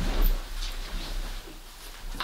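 A person dropping onto a fabric sofa: a soft low thump with a rustle of cushions and clothing at the start, then quiet room tone.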